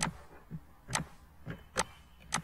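Computer mouse clicking as a 3D viewport is navigated: five sharp clicks in two seconds, unevenly spaced and alternating louder and softer.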